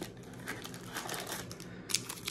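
Quiet rustling and crinkling of a sealed 2023 Panini Prizm football card pack's wrapper as it is pulled from its cardboard retail box and handled, with one sharper crinkle near the end.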